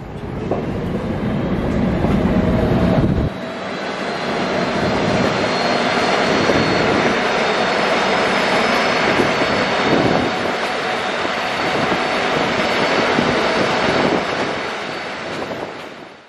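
Coaches of a slow-moving passenger train rolling past close by, their wheels rumbling steadily on the rails, with faint high steady tones over the noise. A deep rumble under it cuts off suddenly about three seconds in, and the sound fades at the very end.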